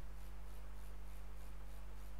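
Steady low electrical hum with a faint hiss over it, a recording's background noise with no clicks or other events.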